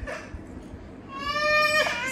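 A toddler's high-pitched whining cry: one drawn-out wail of just under a second in the second half, sliding slightly down in pitch.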